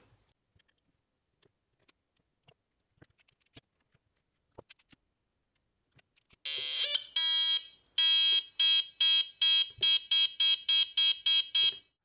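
Faint clicks of wiring a breadboard, then about six and a half seconds in, the Franzis retro-sound kit's sound chip starts a buzzy electronic tone through its small speaker. From about eight seconds the tone beeps on and off about three times a second: the oscillator is being switched on and off at a set rate to make a pulse.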